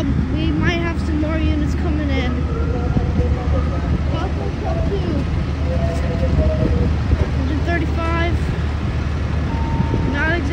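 Parked fire engines' diesel engines idling: a steady low rumble, with people's voices talking in the background.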